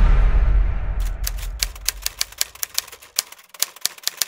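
A low rumble left from the music dies away over the first couple of seconds, and from about a second in a run of sharp, unevenly spaced clicks sets in, about five a second.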